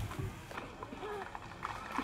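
Marching soldiers' boots striking the ground in step, with crowd voices murmuring.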